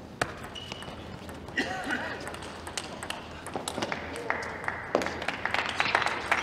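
Table tennis hall between points: a sharp tap a fraction of a second in, then scattered light single taps and a few voices from the room.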